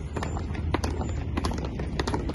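Boots of a column of cadets marching in parade step, striking the asphalt in a run of sharp, slightly uneven stamps over a steady low rumble.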